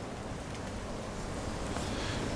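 Steady wind noise on the microphone, an even rushing hiss with no distinct clicks or tones.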